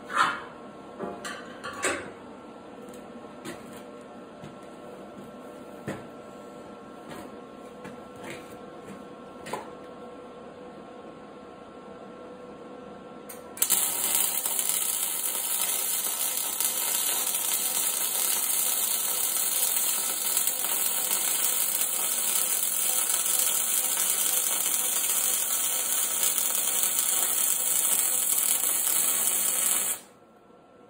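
A few light knocks and clicks of steel being handled, then about halfway through a MIG welder running 0.035 wire strikes an arc and lays a continuous weld bead on heavy steel plate, a steady sizzle that carries on to the end.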